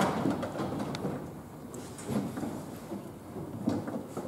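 A sharp knock, followed by low rumbling and rustling handling noise with a few small knocks.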